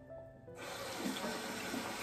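Tap turned on about half a second in, water running steadily into a bathroom sink.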